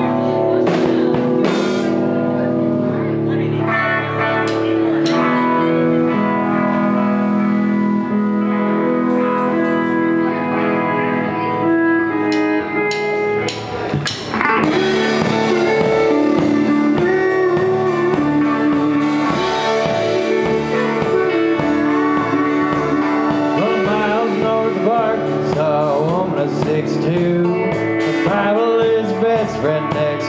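A live band playing: drums, electric bass and electric guitar with a keyboard, loud and continuous. The music dips briefly about halfway through, then carries on with a wavering melody line over the band.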